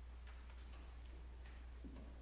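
Near silence: a steady low hum with a few faint scattered ticks.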